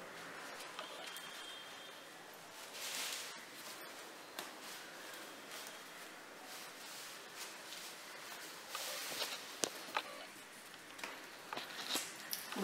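Faint rustling of white cloth being smoothed and pulled taut over a wooden embroidery hoop, with scattered light clicks and taps from handling the hoop. A louder rustle comes about three seconds in.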